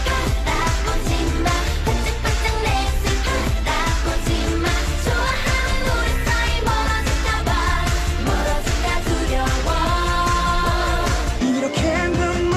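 K-pop song playing, with singing over a steady dance beat. Near the end the bass drops out briefly and a rising sweep begins, as the track changes.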